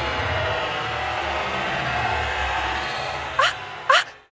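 Steady background from a game broadcast with music playing. Near the end the background fades and two short, sharp sneaker squeaks come about half a second apart.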